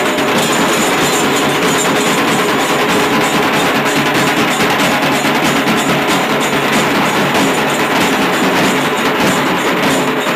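An ensemble of large stick-played barrel drums beating a fast, dense, unbroken rhythm.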